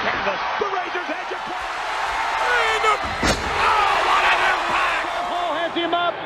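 Arena crowd noise with scattered shouts, and one sharp thud about three seconds in: a wrestler's body slammed down onto the ring canvas.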